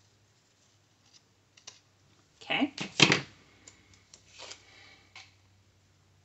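Scissors snipping through sticker paper, with light paper rustling and small clicks. The loudest moment is a quick cluster of snips and knocks about two and a half to three seconds in, followed by softer paper rustling.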